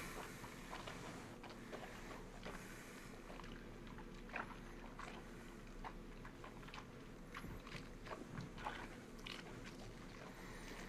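Faint, scattered small clicks and mouth noises of whisky being sipped and worked around the mouth, over a low steady hum.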